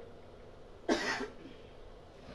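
A single short cough, about a second in, quieter than the speech around it.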